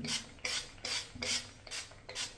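Finger-pump spray bottle of Redken Extreme CAT liquid protein treatment misting onto wet hair: a quick run of about five short hissing sprays, a little more than two a second.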